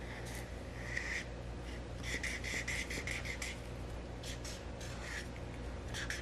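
Felt-tip marker scribbling on paper while colouring in a shape: a string of short scratchy strokes that come quickest about two seconds in, over a faint steady low hum.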